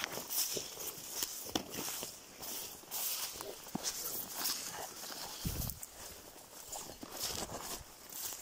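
Footsteps pushing through horsetail and dry dead fern, an irregular rustling with small cracks of twigs and stems, and one dull thump a little past halfway.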